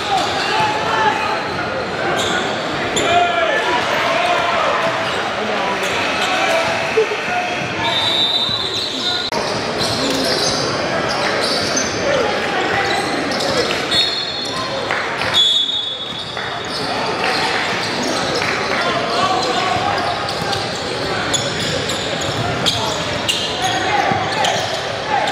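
Echoing gym sound of a basketball game: a basketball bouncing on the hardwood floor amid steady, indistinct crowd chatter, with a few short high-pitched squeaks.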